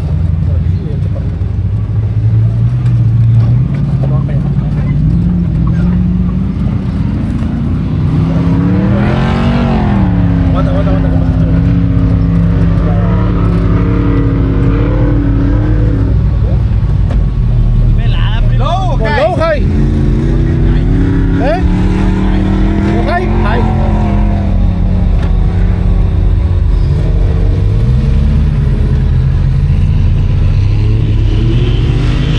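Off-road truck engine driving through soft sand dunes, its pitch climbing and falling as it revs, highest about nine seconds in and again a little past twenty seconds, over a heavy low rumble of wind on the microphone.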